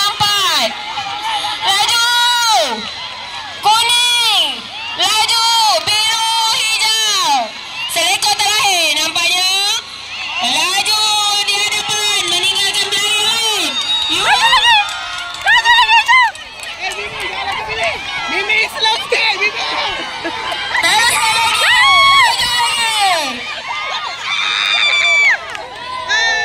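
Crowd of spectators, many of them children, shouting and cheering in high voices. The calls rise and fall over and over, one after another, without a break.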